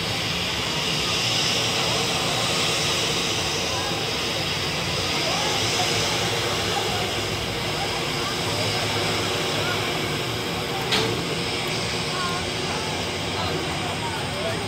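Outdoor crowd ambience at a drop-tower ride: a steady hiss with faint, indistinct voices, and a single sharp click about eleven seconds in.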